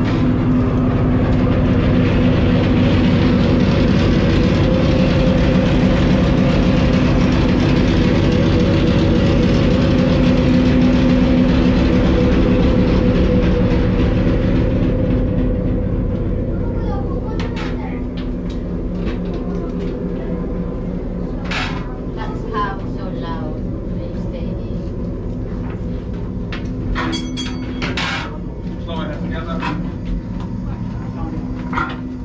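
Steady diesel-engine drone with a deep low hum, a recorded engine-room soundscape played through speakers in a preserved submarine; it drops to a lower level about halfway through. Sharp clicks and knocks follow in the second half.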